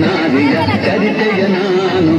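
Several voices talking over one another, loud and without a break, with faint music underneath.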